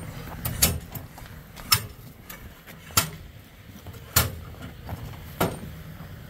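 About six sharp, irregularly spaced metal knocks: a steel bar striking and prying at frozen grain and ice packed into an auger's intake hopper and flighting.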